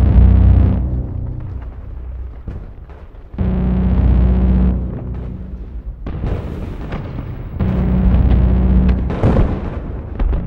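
Dramatic film score of deep, low booming swells with a sustained low drone, three of them about four seconds apart, the first the loudest. Sharp crackling sound effects fall between the second and third.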